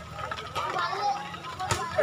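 Faint background chatter of spectators, then a single sharp smack near the end as a volleyball is struck on the serve.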